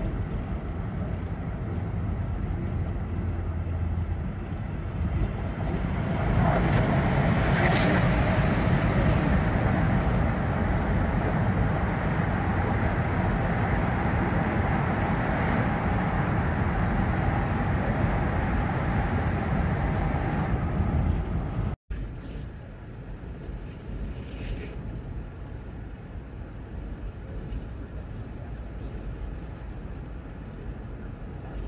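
Road noise of a van driving on a highway, heard from inside the cab: a steady low rumble of engine and tyres that grows louder about six seconds in as the road runs through a tunnel. Near two-thirds of the way through it cuts off abruptly and gives way to quieter open-road driving noise.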